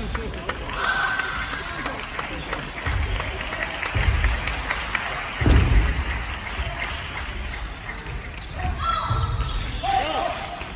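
Sports hall ambience during table tennis: scattered sharp clicks of table tennis balls, voices in the hall, and several dull low thuds, the loudest about five and a half seconds in.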